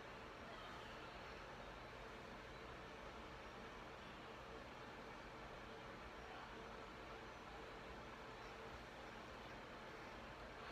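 Near silence: the faint steady hiss of room air blowing in the background, with a faint steady hum.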